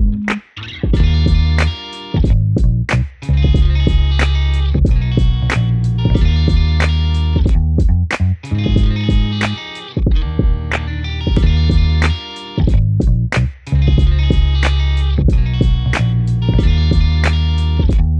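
Background music: an upbeat guitar instrumental with a bass line and a steady beat, dipping briefly a few times.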